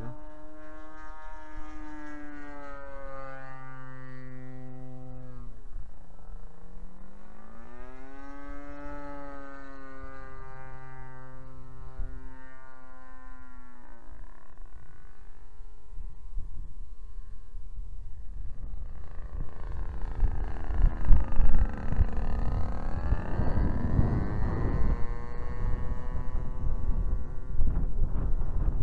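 Engine of a large radio-controlled scale model Ryan STA aircraft in flight: a steady drone whose pitch slides down and back up several times as the plane passes and the throttle changes. In the second half, gusty wind rumbles on the microphone, loudest about two-thirds of the way through, and partly covers the engine.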